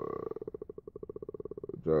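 A man's drawn-out, creaky "uhhh" of hesitation, a rattling vocal fry held for nearly two seconds before it trails off.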